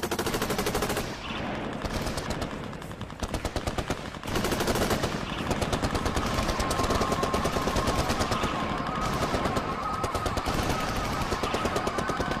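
Sustained, rapid gunfire from automatic weapons: a long hail of bullets with shots following each other too closely to count.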